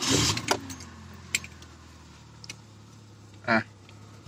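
Zastava Yugo's small four-cylinder engine starting on petrol: the last of the starter cranking, the engine catching in the first half second, then its revs dropping and settling into a steady idle at about 1000 rpm. It has just been switched from LPG to petrol and is starting once the fuel comes through.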